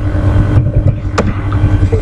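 A steady low rumble with a constant hum, and a couple of sharp clicks from a computer keyboard as text is typed.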